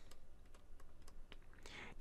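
A handful of faint, light clicks and taps from a stylus on a pen tablet as a word is handwritten.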